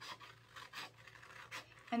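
Scissors cutting paper: several short snips in quick succession as an inner-ring template is cut out of a photocopy.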